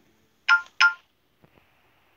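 Smartphone notification chime: two short pitched tones about a third of a second apart, about half a second in.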